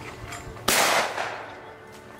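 A single shotgun shot about two-thirds of a second in, sharp at the start and dying away over about half a second.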